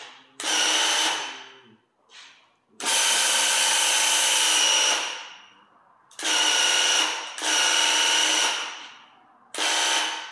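Graco handheld airless paint sprayer's pump motor running in repeated bursts as the trigger is pulled for spray passes, about six in all, some short and some about two seconds long. Each burst starts sharply with a steady high whine and winds down over about half a second when the trigger is released.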